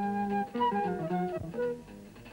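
Background music: a melody of held notes stepping up and down in pitch.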